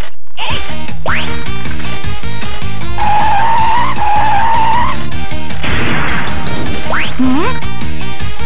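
Pachinko machine's electronic game music playing loudly with sound effects: a quick rising whistle about a second in and again near the end, and a warbling high tone in the middle, while the number reels spin.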